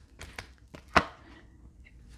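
A few light taps and clicks of tarot cards being handled and set down on a cloth-covered table, with one sharper tap about a second in.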